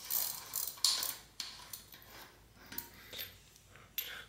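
A Shimano 6-speed bicycle freewheel being unscrewed by hand from the rear hub threads: a run of irregular, fairly faint metallic clicks and scrapes from the spinning freewheel.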